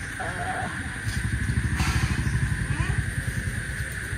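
A low engine rumble, like a motor vehicle passing, that swells about a second in and fades near the end.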